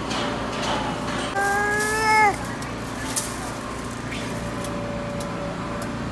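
A sheep bleating once, a single high call lasting about a second that starts about a second and a half in and drops away at its end, over a steady low hum.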